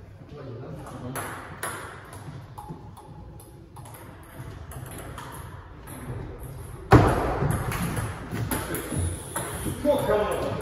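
Table tennis ball ticking off bats and the table in a serve and short rally. There is a sudden loud sound about seven seconds in, and voices follow it.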